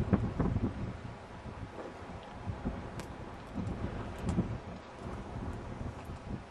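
Strong wind buffeting the microphone in uneven gusts, strongest right at the start and again about four seconds in, with a few faint ticks.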